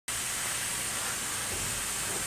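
Steady background hiss with a brighter high-pitched band and no distinct event.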